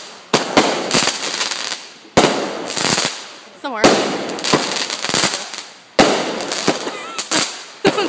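A multi-shot consumer firework (the "Hootanany") firing a rapid, uneven series of shots, about a dozen in eight seconds. Each shot is a sharp bang followed by a fading crackle of sparks.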